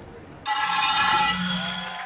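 A shimmering, chime-like musical sting over a low held tone, coming in suddenly about half a second in and slowly fading.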